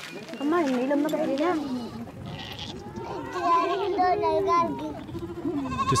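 A woman's voice, then a herd of goats bleating, with several wavering calls overlapping from about three seconds in.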